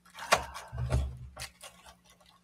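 Small cardboard box handled and pried open on a wooden table: a sharp click about a third of a second in, then dull bumps and rubbing of cardboard and plastic wrap.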